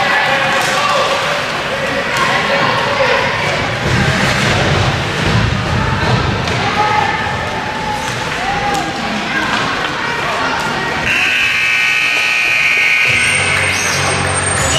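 Ice hockey rink during play: spectators' voices calling out over repeated knocks and thuds of the puck and sticks against the boards. About three-quarters of the way through, steady music comes in.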